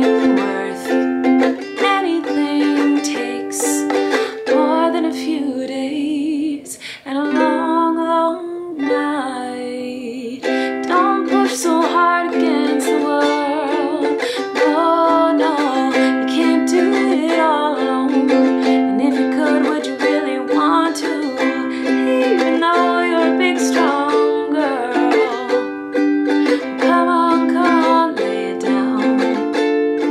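A woman singing a slow song to her own ukulele accompaniment, the strummed chords continuing steadily under sung phrases with short pauses between them.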